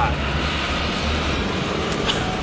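Steady outdoor background rumble and hiss, even in level throughout.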